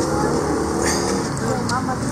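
Street traffic: motor vehicles running past on the road, with indistinct voices mixed in.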